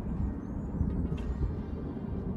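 Wind buffeting the microphone outdoors: a low, uneven rushing noise that rises and falls.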